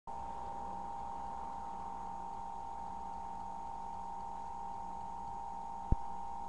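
Steady electrical hum with a high steady whine, picked up on a webcam microphone, and one short low thump just before the end.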